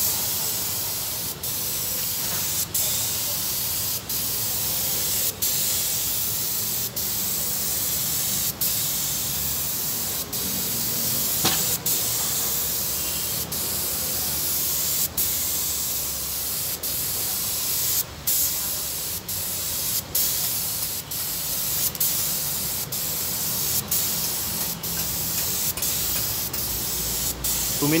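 Air-fed gravity-cup paint spray gun spraying onto a car body panel: a steady hiss that breaks off for a moment about every one and a half seconds between passes.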